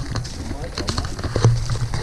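Footsteps on dry leaf litter, with irregular knocks and rustles from handling while walking.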